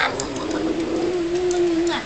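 One long, steady, low 'oooh'-like vocal tone held for nearly two seconds, rising slightly at the start and then level.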